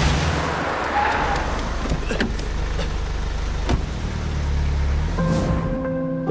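A car driving past close by, over a low, tense music score.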